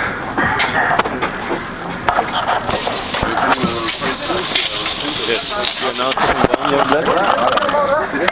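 Interior noise of a Berlin U-Bahn train car, with passengers' voices over it. A short hiss comes about three seconds in, followed by a higher rushing noise for a couple of seconds.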